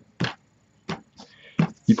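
A deck of playing cards being cut by hand: two short snaps, the first and loudest just after the start, the second about a second in.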